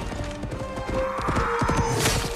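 Rapid hoofbeats of galloping horses under an orchestral film score.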